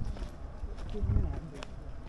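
Faint, indistinct voices with a few sharp clicks and a steady low rumble underneath.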